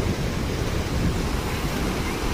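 Muddy floodwater rushing steadily across a river ford, with wind buffeting the microphone.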